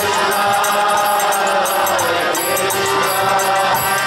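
Devotional kirtan: a group chanting in unison with harmonium and violin, over a steady percussion beat.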